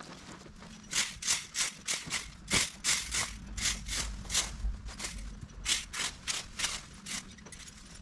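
A garden rake dragged in quick strokes over the lawn, gathering cut beech-hedge leaves and twigs: a run of dry scraping rasps about three a second, with a short pause just past the middle.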